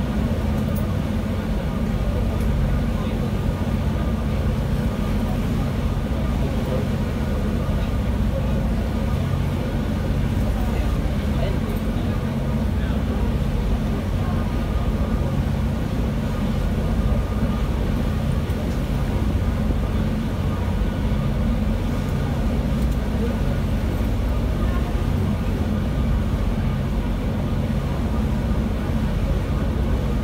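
Steady low drone of a harbour ferry's engines while it is underway, with a constant hum and no change in pace.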